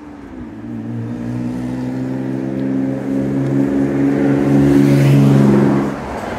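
An engine running at a steady pitch, growing louder over about five seconds, then dropping away abruptly near the end.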